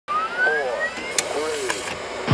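Electronic logo-sting sound effect: a whistling tone rising steadily for about a second, with warbling swoops beneath it and two sharp clicks in the second half.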